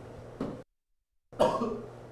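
Quiet room tone with a steady low hum, broken by a short sound about half a second in. Then comes a gap of dead silence, then a brief cough about a second and a half in.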